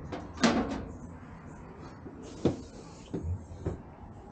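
Clunks and knocks from handling the cover of an RV outdoor-kitchen cooktop. The loudest clunk comes about half a second in, a sharp knock comes midway, and a few lighter knocks follow near the end.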